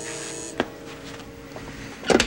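Telephone intercom buzzer buzzing and cutting off about half a second in, followed by a single click, over a low steady hum.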